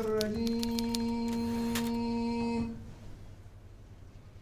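Typewriter key strikes, about four or five a second, over a steady held low note. Both stop a little under three seconds in, leaving faint room tone.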